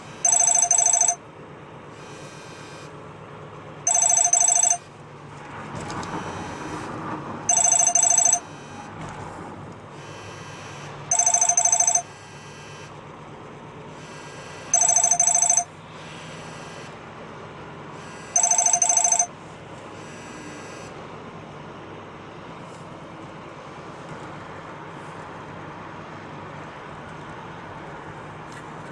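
Phone ringtone ringing six times, each ring about a second long and about three and a half seconds apart, then stopping. Steady car road noise runs underneath and carries on after the ringing ends.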